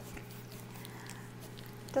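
French bulldog puppies moving about in a lap right against the microphone, making faint, indistinct animal sounds over a steady low hum.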